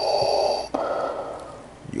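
A man breathing heavily right at the microphone behind a white face mask. There is one loud, long breath with a faint high whistle in it, then a softer breath.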